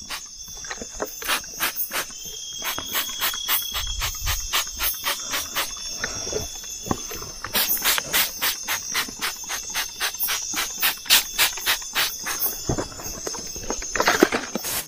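A hand trigger spray bottle is pumped again and again, giving runs of short spraying hisses several times a second with brief pauses. Behind it is a steady, high-pitched trill of night insects.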